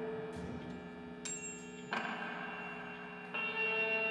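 Experimental live music: layered, sustained ringing metallic tones like bells or a gong, played from a table of effects and electronics. New struck tones enter about a second in and near two seconds, and a brighter high tone joins just after three seconds, all ringing on.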